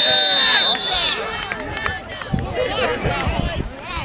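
Referee's whistle blown once, a steady high-pitched tone lasting about a second, signalling the end of the play. Spectators' voices shout and chatter through it.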